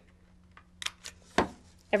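Handheld corner-rounder punch snapping shut as it rounds a corner of a paper envelope: a few light clicks, then one sharp snap about one and a half seconds in.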